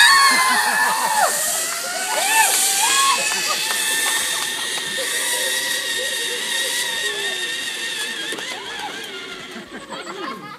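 Zip-line trolley pulleys running along the steel cable with a steady whine that slowly fades as the rider travels away down the line. Shouts and cheers from the group on the ground come over it, most of them near the start.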